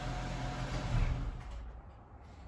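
2010 Chrysler 300's engine idling with a steady low hum and a brief bump about a second in; the hum fades away about a second and a half in.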